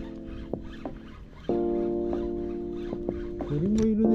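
Electronic background music: sustained chords that shift to a new, louder chord about one and a half seconds in, with a short rising-and-falling pitch glide near the end and a few faint clicks underneath.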